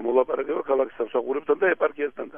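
Speech only: a person talking steadily in Georgian.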